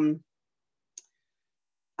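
A woman's voice trails off, then one short click about a second in, in otherwise complete silence.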